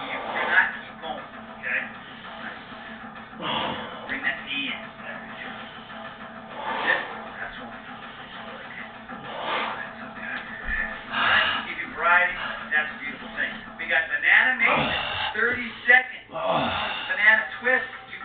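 Indistinct talking over steady background music, the voice growing busier in the last several seconds.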